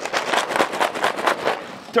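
A closed wooden assortment case with 3D-printed latches and bins shaken hard, its contents rattling rapidly and continuously.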